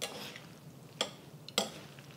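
A utensil clicking against a bowl while noodles are mixed with sauce: a few light clicks, one at the start, one about a second in and another half a second later.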